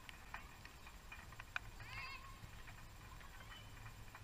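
Distant shouts from players across an outdoor football pitch, one rising-then-falling call about two seconds in, with a few sharp knocks, the loudest about one and a half seconds in. A steady low rumble of wind on the microphone sits underneath.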